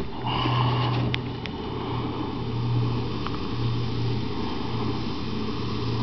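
A steady low hum, with a faint hiss and a couple of small clicks about a second in.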